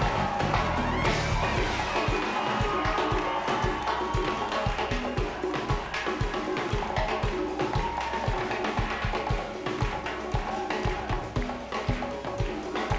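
Live salsa band playing an instrumental passage: horn lines over an even, steady drum and conga beat.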